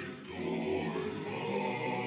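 A choir of voices holding sustained chords in a song's opening, with no lyrics yet.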